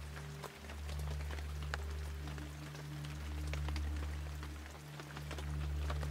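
Rain sound with scattered drop ticks over a low, steady drone that slowly swells and fades.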